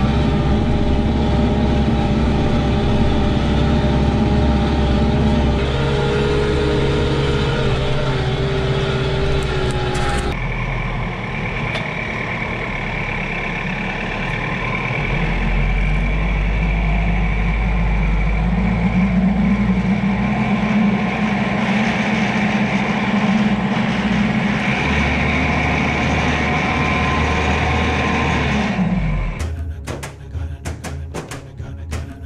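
Kioti RX7320 tractor's diesel engine running under load, heard from inside the cab, as it pulls a chisel disc harrow through the ground. About ten seconds in the sound cuts to a tractor engine running with a steady whine as the front-loader bucket works the ground, until music takes over near the end.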